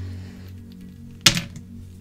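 One sharp click a little over a second in, over soft, steady background music.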